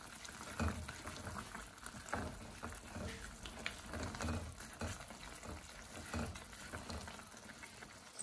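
Thick curry sauce simmering in a stainless steel pot while a spatula stirs through it: wet, sloppy stirring strokes with soft scrapes and knocks against the pot, coming irregularly about every second. The sauce is being reduced over a lowered flame.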